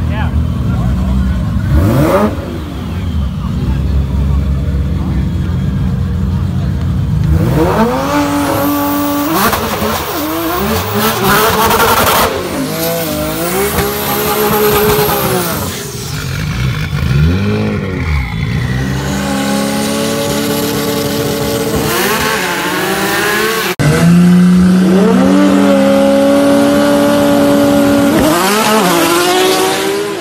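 Race-car engines revving hard, rising and falling in pitch again and again, as a 2JZ inline-six-swapped Nissan 240SX spins its rear tyres in a burnout. After a sudden cut about three-quarters of the way in, the engines are held at high revs, climbing in pitch as the cars launch.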